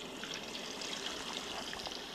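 Taro-paste-coated duck deep-frying in hot oil in a wok: a steady bubbling sizzle with many small crackles.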